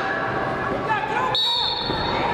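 A referee's whistle blast, one steady high tone that starts about one and a half seconds in, over voices shouting in the hall. Just before it, a brief thump as the wrestlers go down on the mat.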